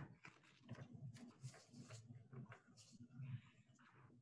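Near silence: faint room tone and a few faint incidental noises from participants' open microphones on a video call.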